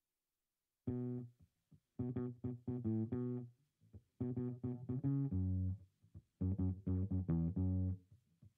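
Guitar and bass music: plucked phrases separated by short breaks. It starts about a second in, after silence.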